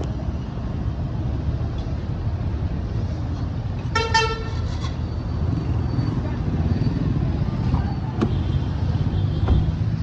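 Street traffic noise, a steady low rumble of idling and passing vehicles, with one short vehicle horn toot about four seconds in.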